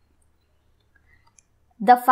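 Near silence, with a few faint clicks about a second in; a voice starts speaking just before the end.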